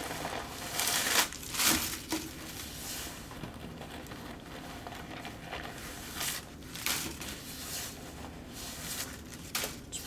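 Packing paper crumpling and rustling as a hand pulls it out of a new backpack's laptop compartment. It is loudest in two spells in the first two seconds, then comes in softer, scattered rustles.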